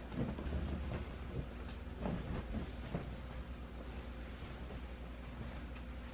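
Room tone: a steady low hum, with a few short rustles and knocks in the first three seconds.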